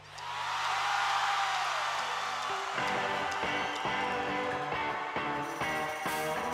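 Live rock band music. A noisy swell opens it, and about two and a half seconds in, guitar notes come in over a light beat.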